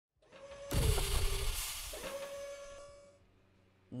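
A short electronic intro sting: a rising hiss, then two sudden hits, each followed by a held tone, fading out about three seconds in.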